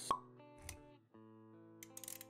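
Intro music with sustained plucked notes, a sharp pop sound effect just after the start, a low thud about two-thirds of a second in, and a run of quick clicks near the end, all matching an animated logo sting.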